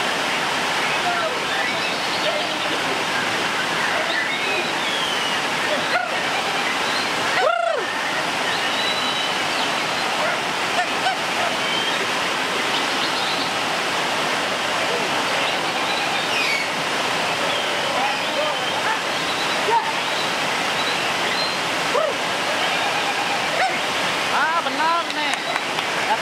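White-rumped shama (murai batu) singing scattered whistled notes, with one loud clear whistle about seven and a half seconds in, over a steady rushing hiss of rain.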